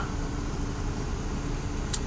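Steady low mechanical hum with a faint steady tone, and a small click near the end.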